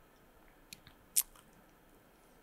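Quiet pause with a few small mouth clicks, lip or tongue smacks picked up close on a microphone; the sharpest comes a little after a second in.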